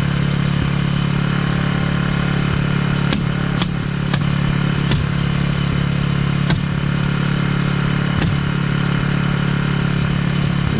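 A portable generator's engine runs steadily under six sharp shots of a pneumatic framing nailer driving nails into roof sheathing. Four come quickly, about half a second apart, between three and five seconds in, then two more, spaced further apart.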